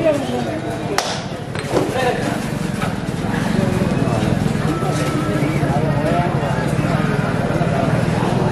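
Voices of players and onlookers calling out and talking over one another during a kabaddi raid. There are two sharp claps or knocks, about one and two seconds in, and a steady low hum underneath that grows from about three seconds in.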